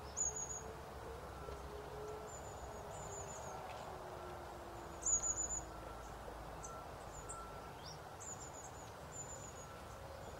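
Small birds chirping with short, very high trills, the two loudest right at the start and about five seconds in, over faint outdoor background noise.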